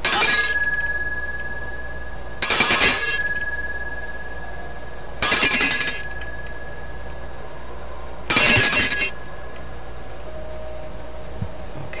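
Small metal hand bell rung four times, roughly every three seconds. Each ring is a quick shaken jangle that then sings on as a clear, high tone fading over a second or two.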